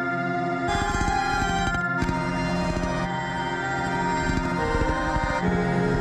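Keyboard-played synthesizer chords run through Puremagnetik's Mimik OD variable pitch and time repeater on its Psycho Flat 3 preset. Several held chords change every second or two over a fast, grainy flutter in the low end.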